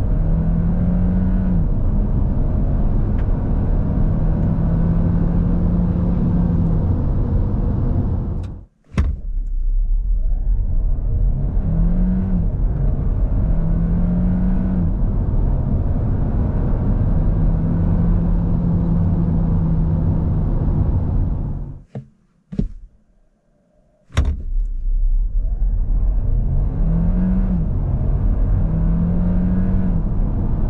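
The 1.6-litre turbo four-cylinder of a Hyundai Tucson Hybrid, heard from inside the cabin under full-throttle acceleration. Its note climbs with the revs and drops at each upshift of the six-speed automatic. The sound cuts out briefly about nine seconds in, and again for about two seconds a little past the twenty-second mark.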